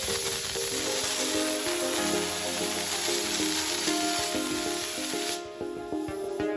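CNC plasma cutting torch hissing steadily as its arc cuts a hole through the steel web of an H-beam, stopping near the end as the cut finishes. Background music plays throughout.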